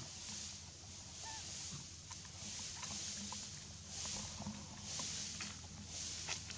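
Tropical forest ambience: a high, steady insect drone that swells and fades, with scattered small clicks and rustles and one short squeak about a second in.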